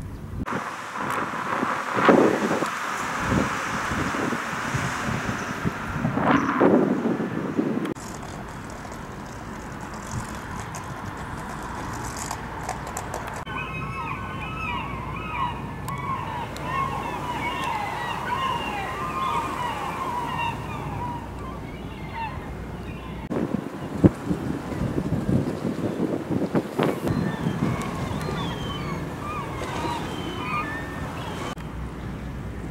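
Wind on the microphone and the wash of sea surf for the first several seconds; then, after a cut, outdoor ambience with birds calling over and over in the middle, and a single sharp knock a little later.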